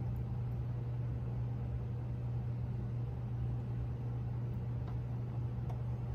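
Motor oil pouring from a quart bottle into a funnel in an engine's oil filler, a faint even trickle over a steady low hum.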